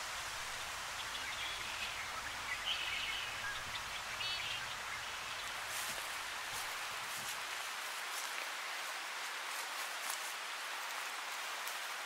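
Outdoor woodland ambience: a steady hiss with a few short, faint bird chirps in the first few seconds and light rustling around the middle.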